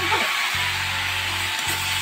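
Food frying in a wok over a wood fire: a steady sizzle, with background music underneath.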